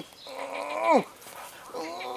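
Wordless vocal calls: a held, whine-like call that slides down in pitch at its end about a second in, then a shorter call falling in pitch near the end.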